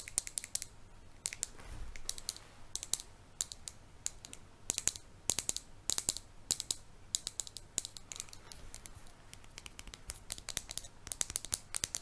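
Fingernails tapping and clicking on a plastic lipstick tube held close to the microphone: quick irregular clusters of sharp clicks.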